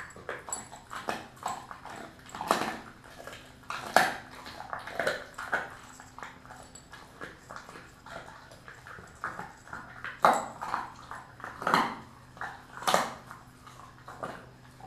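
A Kelpie-mix dog chewing raw beef tail bone: irregular wet clicks and crunches, with several loud cracks spread through, the last few coming close together near the end.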